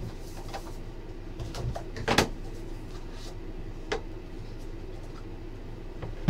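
A trading-card box being cut open with a blade and handled on a table: light scrapes and a few clicks, with one sharper knock about two seconds in.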